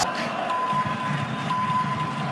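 A steady, high, single-pitch electronic beep tone that comes in about half a second in, drops away briefly and returns, over the murmur of a stadium crowd.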